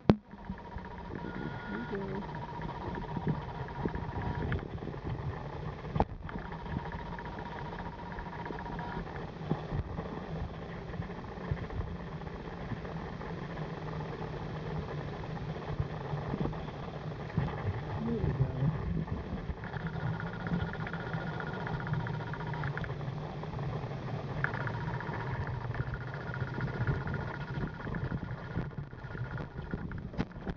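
Muffled underwater noise picked up by a submerged camera: a steady low rumble with handling bumps, a sharp knock about six seconds in, and a faint whine that comes and goes.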